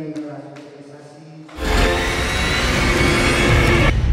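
Quiet background music, then about a second and a half in a loud, full station ident jingle cuts in with heavy bass and holds to the end.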